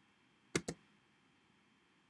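Two quick, sharp clicks at a computer about half a second in, as the paused video playback is started again; otherwise only faint room tone.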